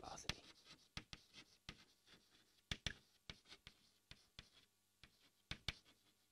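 Chalk writing on a blackboard: faint, irregular taps and scratches of the chalk as words are written, a little more clustered about three seconds in and near the end.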